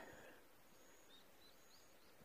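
Near silence, with a few faint, short, high chirps from distant birds.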